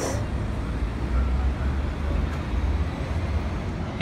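Low, uneven rumble of city street traffic.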